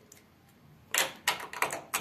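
A square metal cover plate being pushed and worked onto a door's thumb-turn rosette: a quick run of small sharp metal clicks and taps starting about a second in.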